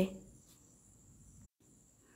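A pause in speech: near silence with a faint steady high-pitched tone underneath, cut to dead silence for a moment about one and a half seconds in.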